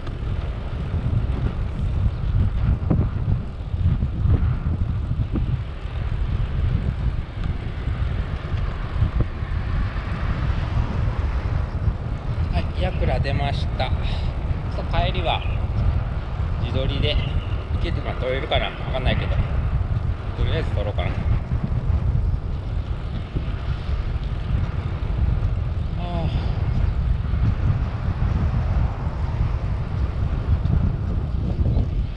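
Wind buffeting the microphone of a bicycle-mounted camera while riding, a steady low rumble.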